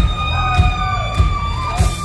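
Live country-rock band playing the start of a sing-along song: one long high note held steady over the beat of the kick drum and bass.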